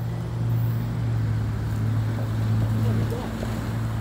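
Diesel locomotive engine running with a steady low drone.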